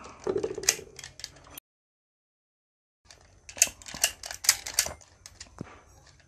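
Hard plastic clicking and clattering as the DX Gosei Tiger toy is handled and its parts are moved. Quick runs of sharp clicks come at the start and again past the middle, with about a second and a half of dead silence between them.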